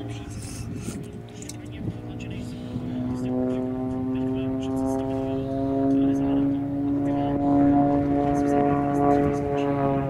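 Aerobatic monoplane's piston engine and propeller droning overhead. The drone grows louder from about three seconds in, holds a steady pitch, then falls slightly in pitch near the end.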